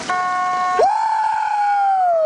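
A long, drawn-out yell held on one pitch, stepping up in pitch under a second in and then slowly sagging.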